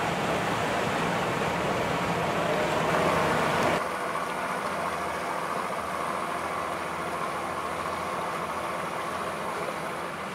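Outboard motor running at low speed with a rush of water. About four seconds in, the sound changes abruptly to a quieter, steadier engine drone.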